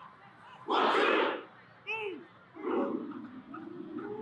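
Marching band members shouting as a group: a loud yell about a second in, a short single call, then a second yell near the end.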